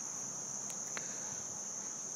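A steady, high-pitched shrill background tone with nothing else over it but a faint tick about a second in.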